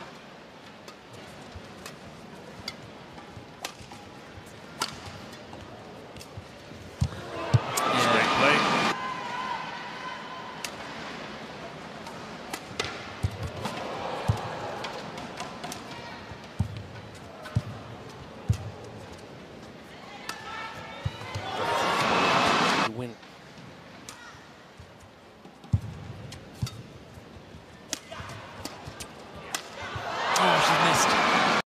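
A badminton rally: racket strikes on the shuttlecock heard as sharp, separate clicks. The crowd cheers twice as points end, about seven seconds in and again about twenty-one seconds in.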